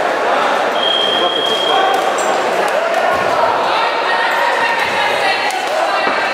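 Many voices shouting over one another in a large, echoing hall, the calls of corner men and spectators during a kickboxing bout, with a few dull thuds of strikes or footwork among them.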